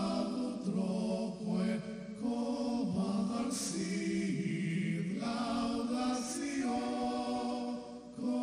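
Slow sung chant in a devotional style, with voices holding long notes that step to a new pitch every second or so.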